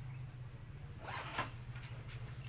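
Zipper on a pink fabric shoulder bag being pulled, a short rasp about a second in.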